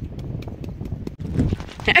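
Knife digging into grassy soil: a run of small, sharp scraping clicks over a low rumble.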